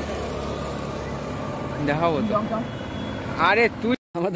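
A motor scooter passing on the road, its engine a steady low hum for the first two seconds or so, then voices speaking briefly, loudest near the end.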